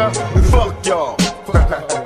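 Gangsta rap track: a rapped male vocal over a hip hop beat, with two deep kick drums about a second apart and crisp hi-hat or snare hits.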